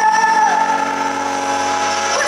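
End of a live pop song: a woman's long held sung note tails off about half a second in, leaving a sustained band chord ringing steadily.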